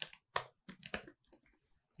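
Computer keyboard typing: a quick run of separate keystrokes that stops about a second and a half in.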